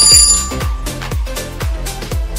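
A short, bright alarm-bell ring sounds as the quiz timer runs out. It is loudest in the first half-second, then fades. Under it plays background electronic music with a steady beat of about three drum hits a second.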